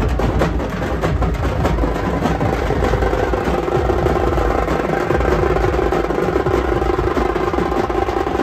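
Loud, fast drumming with sticks on hand-held folk procession drums, a dense run of sharp strokes. A steady held note joins about three seconds in.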